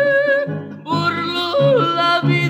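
Mariachi recording of a son jalisciense: a held note breaks off about half a second in. About a second in, a singer's yodel-like falsetto with vibrato enters over the violins, while guitarrón and vihuela strum a steady rhythm underneath.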